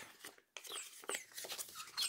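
Faint paper rustling and light scraping, with a few small ticks, as a paper card is slid out of a paper pocket in a handmade journal.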